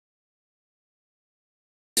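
Dead digital silence, with no room tone at all, until a man's voice starts speaking just before the end.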